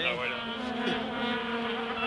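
Vuvuzela horns droning one steady low note.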